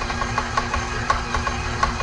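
KitchenAid Professional 6000 HD stand mixer running with its dough hook, kneading a stiff yeast dough: a steady motor hum with a regular knocking about four times a second. Very noisy.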